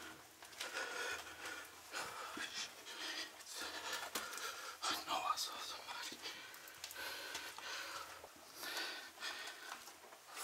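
A person breathing hard in a narrow concrete tunnel, with uneven swells about once a second and some scuffing steps.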